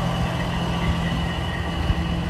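Steady low mechanical hum, like an engine or motor running at a constant speed, with a faint high whine over it.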